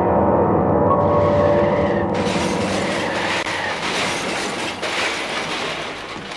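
Late-1960s psychedelic rock instrumental at its close: a sustained chord is held for about two seconds, then a dense rushing noise cuts in suddenly and slowly fades.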